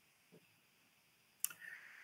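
A single sharp computer-mouse click a little after halfway through, advancing the presentation slide, followed by a faint hum.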